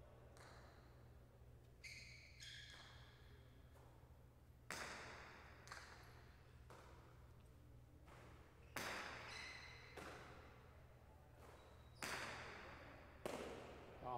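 A jai alai pelota striking the court walls and floor during a rally, about eight sharp echoing cracks that ring on in the hall. The louder strikes come every three to four seconds.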